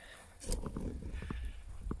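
Handling noise from a camera being picked up and carried: a low rumble on the microphone starting about half a second in, with a few small knocks and clicks.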